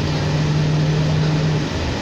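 Interior ride noise of a 2004 New Flyer D40LF diesel city bus under way: a steady rumble of engine and road, with a low droning hum that stops shortly before the end.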